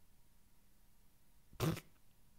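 Near silence, then one short puff of breath about a second and a half in.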